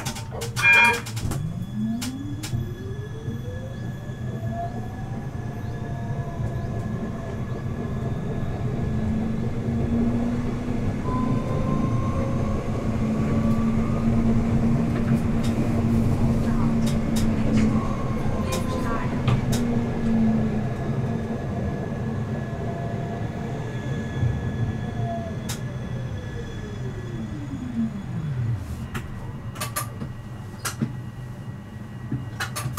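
Siemens Avenio tram's electric drive whining up in pitch as it pulls away, running at speed with the wheels rumbling on the rails, then whining down in pitch as it brakes to a stop near the end. A brief clatter about a second in.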